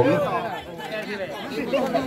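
Background chatter of several people talking, after a man's amplified commentary voice trails off at the start.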